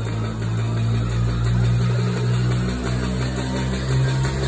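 Electronic dance music in a breakdown: a loud, sustained deep bass synth drone with no drum beat.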